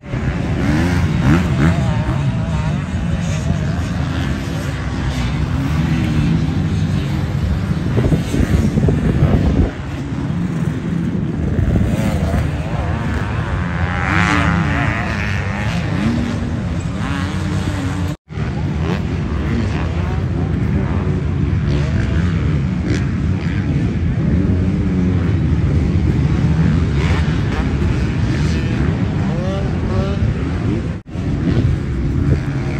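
Motocross dirt bike engines on the track, revving up and falling away over and over as the riders accelerate and shift. There is a brief sudden dropout a little past halfway.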